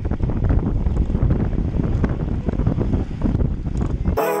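Wind buffeting the microphone of a camera on a road bike riding at speed, a loud, steady rush of noise heaviest in the low end.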